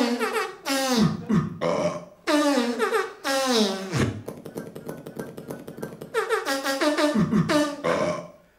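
Electronic stage keyboard playing comic sound effects: bursts of brassy tones that slide down in pitch, with a stretch of rapid clicking in the middle. They mimic primitive human noises such as burps, farts and chattering teeth.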